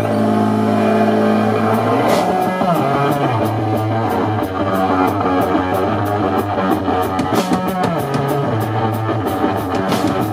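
Live rock from a guitar-and-drums duo: a one-string electric guitar holds a droning note, then about two seconds in a cymbal crash brings in the drum kit with a steady driving beat under the guitar riff.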